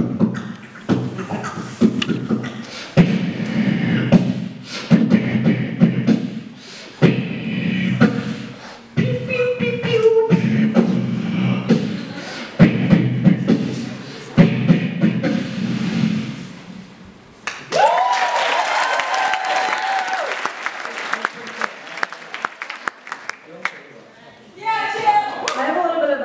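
Beatboxing into a handheld microphone through the hall's PA: rhythmic vocal kick, snare and click sounds over deep bass hums, with a short sliding tone about ten seconds in. About seventeen seconds in the beatboxing stops and the audience cheers and applauds, with a held whoop.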